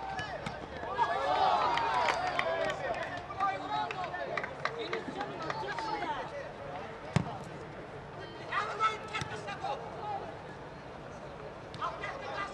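Live pitch sound of a youth football match: players shouting and calling to each other, with scattered thuds of the ball being kicked. A single sharp thud about seven seconds in is the loudest sound.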